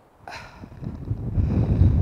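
Wind buffeting a clip-on lapel microphone: a low, gusty rumble that builds over the second half.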